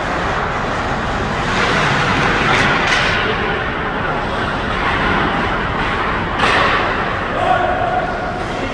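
Ice hockey game in an indoor rink: a steady din of indistinct voices and arena noise, with a couple of sharper knocks about three and six and a half seconds in.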